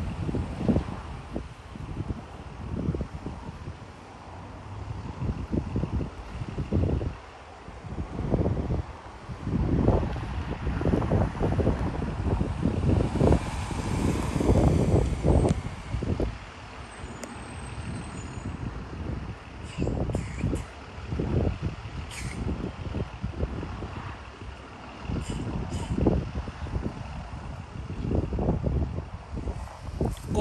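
School bus engine running as the bus pulls up and stops, with a hiss typical of air brakes about halfway through. Gusty wind buffets the microphone.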